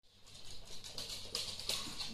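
Shiba Inu dogs' claws and paws ticking and pattering lightly on a wooden floor as they walk, in faint, irregular taps.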